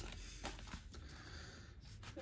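Faint handling of a leather wallet as a paper insert card is slid out of its ID window, with a light tick about half a second in.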